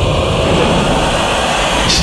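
A loud, steady rumbling roar with no pitch to it: a dramatic whoosh-and-rumble sound effect from the show's soundtrack.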